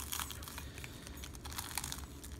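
Clear zip-top plastic bag crinkling and rustling as hands squeeze and work a broken projector lamp inside it, with small irregular clicks.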